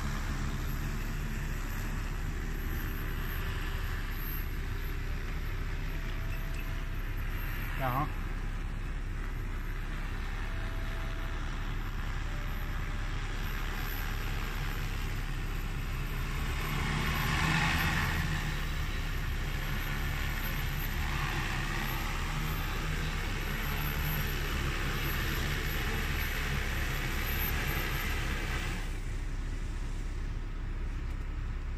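Propellers of a large electric crop-spraying drone (Joyance JT30L) droning steadily in flight, swelling louder around the middle and falling away just before the end as the drone sets down.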